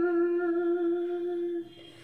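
A woman's unaccompanied voice humming one long, steady note, which stops about one and a half seconds in.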